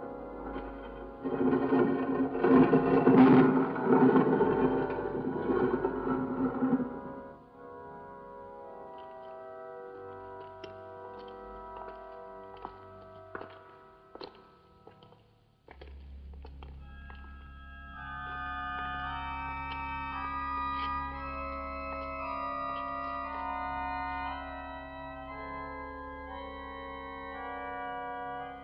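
Organ music on the film score: a loud, full chord for the first several seconds, then quieter held chords. Near the middle it dies down almost to nothing, then a low sustained drone comes in with higher notes held above it.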